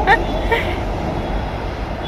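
Steady low rumbling background noise, with faint voices briefly in the first half second or so.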